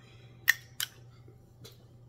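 Two sharp clicks about a third of a second apart, then a faint tick, from handling a glass perfume bottle and its metal cap.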